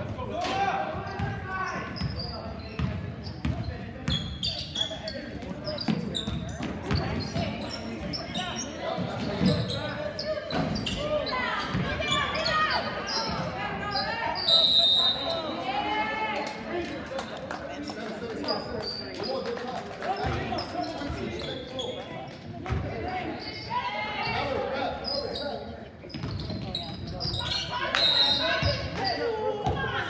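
Youth basketball game in a gym: a basketball bouncing on the hardwood floor amid players' and spectators' voices, echoing through the hall. A short, high referee's whistle blast sounds about halfway through, as play stops with a player down.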